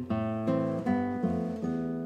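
Solo classical nylon-string guitar played fingerstyle: plucked chords and single notes, struck about every half second and left to ring.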